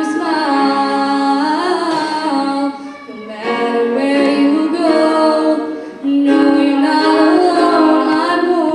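A girls' choir singing, with held notes that glide from pitch to pitch, and two short breaks between phrases, about three and six seconds in.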